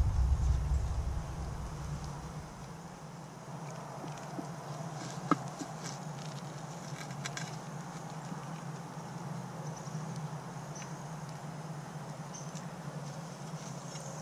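Faint steady low hum of outdoor background, with scattered light ticks and one sharp click about five seconds in; a low rumble fades out in the first second or two.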